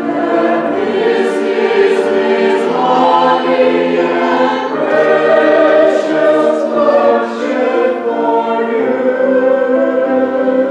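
Mixed church choir of men and women singing together, holding chords that move from one to the next, with the hiss of sung consonants audible now and then.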